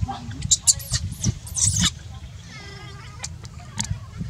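Baby macaque screaming in distress: a run of shrill, rising-and-falling squeals in the first two seconds, then a shorter, thinner cry.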